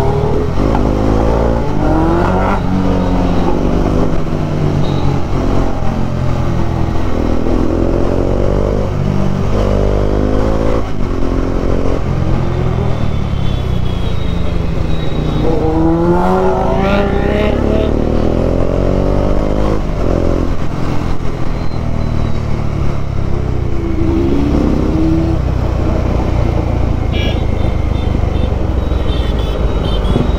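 Motorcycle engine heard from the rider's own bike, revving up and easing off again and again as it pulls away and shifts gears in slow city traffic, over a constant low rumble.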